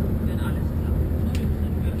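Steady low rumble of a moving vehicle heard from inside, travelling at speed: engine and rolling noise with a constant low hum.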